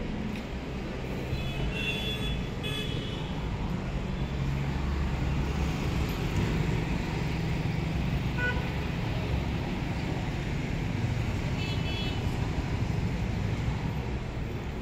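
Busy road traffic with a steady rumble of passing cars, trucks and motorbikes. Vehicle horns toot briefly about two seconds in, once near the middle, and again near twelve seconds.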